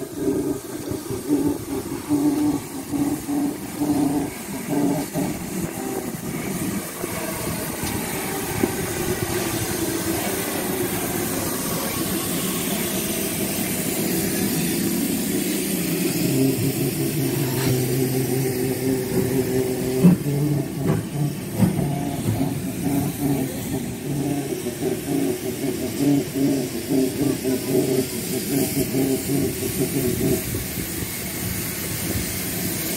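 GWR Hall class steam locomotive No. 4953 'Pitchford Hall' moving slowly past at close range, with rhythmic beats in the first few seconds and a steady low engine drone underneath. There is a single sharp knock about two-thirds of the way through.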